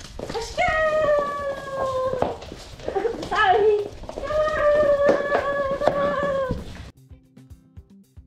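Six-week-old Australian Cattle Dog puppies howling: three high, drawn-out howls, the first and last each held for about two seconds and falling slightly in pitch, the middle one short and wavering. Sharp clicks and taps run under them, and the sound cuts off suddenly near the end, giving way to faint background music.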